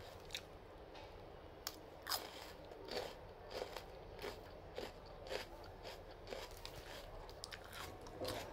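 Close-up crunching as a person chews a bite of firm green fruit, a run of short crunches about two a second.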